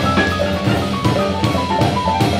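Live jazz ensemble playing, with a busy drum kit under a fast run of short notes that steps generally downward.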